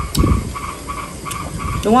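Close-miked drinking and mouth sounds: a man swallowing coconut water from a glass mug, with soft low thuds. A faint short chirp repeats in the background.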